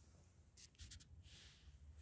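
Near silence: faint room tone, with a few faint short clicks about half a second to a second in.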